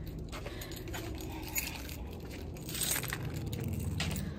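Phone-handling noise: scattered light clicks and clinks over a steady low rumble.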